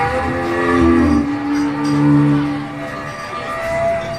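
Cello bowed in long, held notes, two or three sounding together, with a pair of them sliding slightly down in pitch during the first second.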